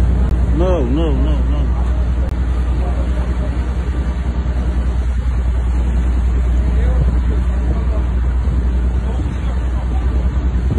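Wind rushing over the microphone on a ship's deck over rough sea, with a steady low rumble underneath; a man calls out briefly about a second in.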